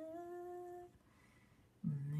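A woman humming a held note that drifts slightly upward and stops about a second in, followed by faint room tone; a new hummed rising note starts right at the end.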